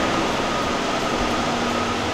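Steady mechanical drone of shop machinery: an even hiss with a faint high whine held throughout.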